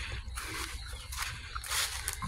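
Rustling and brushing noise of someone moving through leafy garden plants, with a louder rustle near the end, over a steady low rumble.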